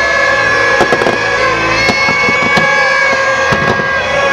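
Aerial fireworks bursting and crackling in quick succession, with several sharp reports. A dense layer of steady high tones at several pitches runs underneath them.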